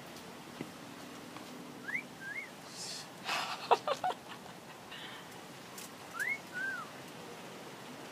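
Pet bird giving a two-note wolf whistle, a rising note then a falling one, about 2 s in and again near the 6 s mark. Between the two whistles comes a brief, louder, scratchier burst.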